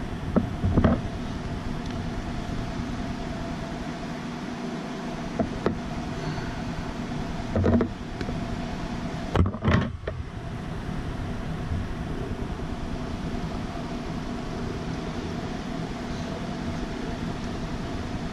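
Steady background hum with a few brief taps and knocks from handling small copper wire and pliers on a tabletop. The loudest comes just before halfway.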